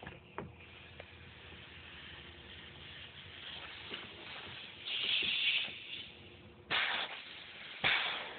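Pistorius VNFA-2 pneumatic underpinner cycling, its compressed air hissing out in three short bursts in the second half, the longest first. A few light clicks and knocks come before them.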